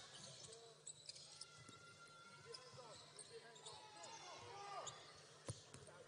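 Faint arena sound of a live basketball game: a ball bouncing on the hardwood court in a few sharp single bounces, the clearest near the end, with short sneaker squeaks and a low crowd murmur.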